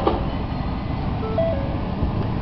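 2013 Ford Edge's engine starting and idling, heard from inside the cabin, with a click right at the start. A short two-note dashboard chime, low then high, sounds about a second in.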